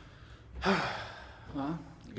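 A man's breathy sigh about half a second in, fading over half a second, followed by a short voiced murmur near the end.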